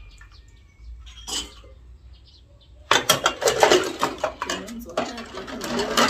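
Ceramic bowls and plates clinking and clattering as they are washed by hand in a basin. Only a few scattered clinks at first, then busy, continuous clatter from about halfway.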